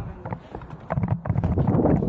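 BMX bike rolling off a ramp deck and into the ramp: a few clicks and knocks, then from about a second in the tyres rumble louder on the ramp surface.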